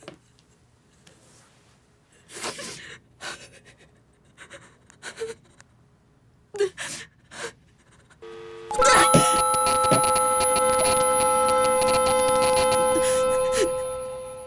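A woman's shaky gasping breaths. Then, about nine seconds in, a sudden loud, sustained ringing screech made of many steady tones sets in, holds, and begins to fade near the end.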